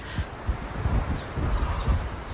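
Wind outdoors: an irregular low rumble of gusts on the microphone over a steady rustle of leaves.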